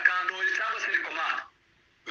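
A voice speaking, which cuts off abruptly about one and a half seconds in, leaving silence.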